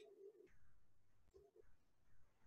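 Near silence: a video's soundtrack coming through an online call so faintly that only a few brief low tones break through, at the start and again about a second and a half in.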